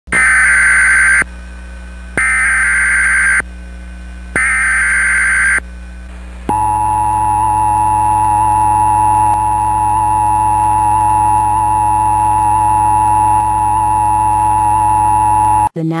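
Emergency Alert System flash flood warning opening: three one-second bursts of SAME digital header data about a second apart, then the steady two-tone EAS attention signal held for about nine seconds. It cuts off sharply just before the spoken warning begins.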